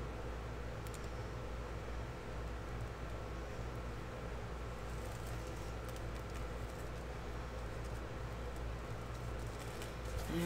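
Quiet room tone: a steady low hum with a few faint, light clicks.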